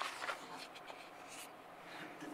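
Faint rustling of paper being handled, with a few soft ticks.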